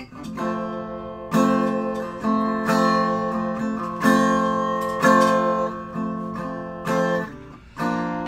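Acoustic archtop guitar strumming chords in an instrumental passage between sung lines, with no singing. A new chord rings out every half second or so, and the playing drops away briefly near the end.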